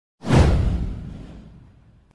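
Cinematic whoosh sound effect with a deep low boom, coming in suddenly after a moment of silence and fading away over about a second and a half.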